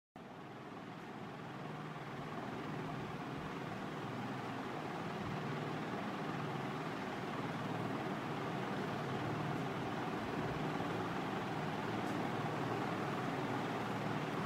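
Steady background drone with a low hum, with no distinct events; it grows a little louder over the first few seconds and then holds level.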